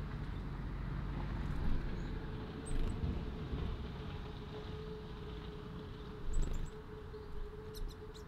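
Garden ambience: a steady low rumble of distant traffic with a faint steady hum, and short high chirps from small birds a few times: once about three seconds in, again around six and a half seconds, and a quick series just before the end.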